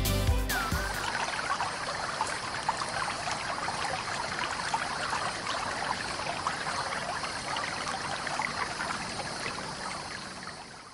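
Music ends about a second in, followed by a steady sound of trickling, running water.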